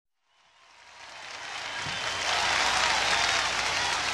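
Live-recording audience applause fading in from silence and rising to a steady level, with a few whistles in the crowd noise.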